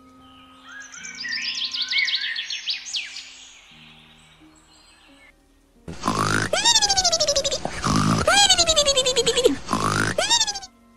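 Cartoon snoring over soft background music. Three times, a snorting inhale is followed by a long whistle falling in pitch; the third starts just before the end. Earlier, from about a second in, comes a run of quick rising chirps.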